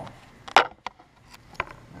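Handling noise: a few sharp knocks and clicks as things are moved and set down on a kitchen counter. The loudest comes about half a second in, then a few lighter taps.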